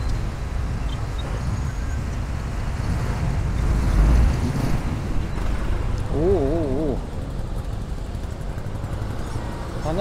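Strong wind buffeting the microphone over the steady noise of a congested street of idling cars and motorcycles, with a gust about four seconds in. A brief wavering voice calls out about six seconds in.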